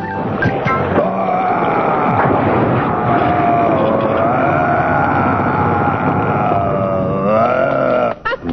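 Cartoon sound effect of a giant rock creature rising out of the ground: a long, steady rumble with a slowly wavering pitched groan over it, lasting about six seconds under dramatic music.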